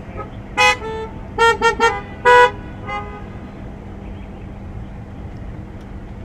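Car horns honking in a string of short toots, starting about half a second in and ending about two and a half seconds in, with the last toot the longest. The honks come from parked cars at a drive-in church service, a congregation's 'amen' to the preacher's point.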